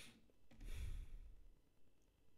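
A man's soft sigh, a breath let out through the nose, swelling and fading within the first second and a half, just after a faint click.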